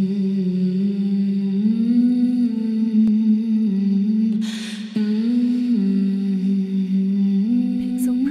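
Soundtrack music: a slow melody hummed by a voice, each note held for about a second, stepping up and down. A short breathy hiss comes about halfway through, just before a new phrase begins.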